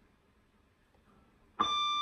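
Electric guitar: quiet at first, then about one and a half seconds in a single high note is picked and rings on.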